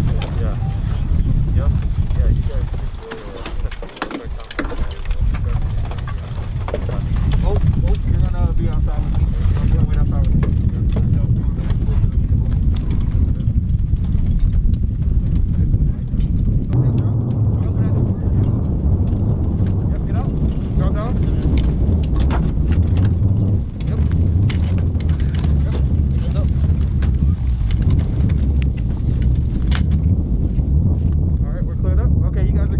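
Indistinct talking among soldiers over a steady low rumble.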